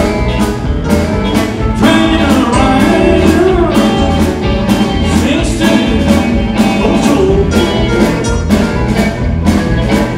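Live rock and roll band playing, with drums, bass guitar, electric guitar and keyboard: a steady drum beat under a bass line and a melodic lead that bends in pitch.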